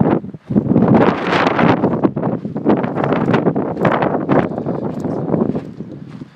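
Wind buffeting the phone's microphone in loud, uneven gusts, with a brief lull shortly after the start and easing off near the end.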